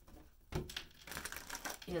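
A deck of tarot cards being shuffled by hand: a quick run of light clicking and flicking of cards, starting about half a second in.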